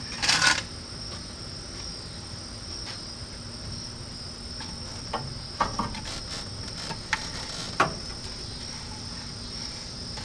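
Steady high-pitched trilling of crickets throughout. A short scraping rustle comes just after the start, then a few sharp knocks as a radiator fan and shroud are handled into the engine bay.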